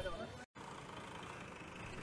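Faint town street ambience: distant traffic and scattered voices, broken by a brief total dropout about half a second in.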